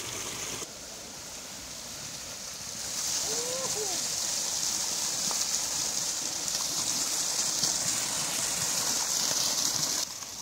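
Water gushing from the outlet of a plastic siphon pipe and splashing into a stream: a steady rushing splash that grows louder about three seconds in and then holds even. The siphon is running but not yet full, with air still in the pipe.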